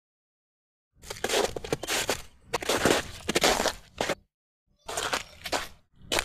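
Crunching, rustling noise in irregular bursts from a sample of objects and a bag being rubbed, used as a rhythmic texture and heard through a video call. It starts about a second in, drops out for a moment near the fourth second and returns briefly, cutting to dead silence between bursts.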